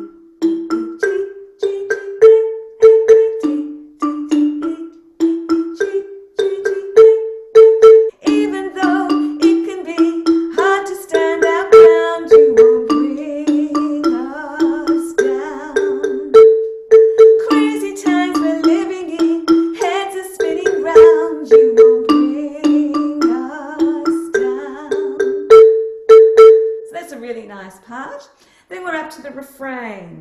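Wooden-barred xylophone struck with soft mallets, playing a repeated ostinato of notes in threes that step up through D, E, G and A and back down. A voice sings along over it from about eight seconds in to near the end.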